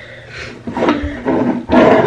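A girl's voice making a rough, growling noise close to the microphone rather than words, loudest near the end.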